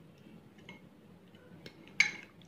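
A few faint ticks of a spoon against a glass mixing bowl as chicken is stirred in a thick marinade.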